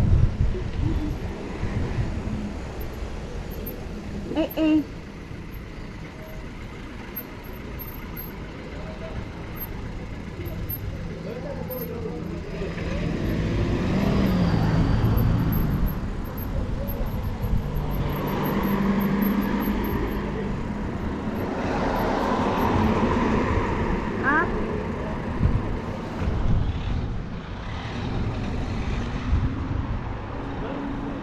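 Wind buffeting the microphone of a bicycle-mounted camera as the bike rolls along a road, with car traffic passing. The traffic noise swells several times in the second half.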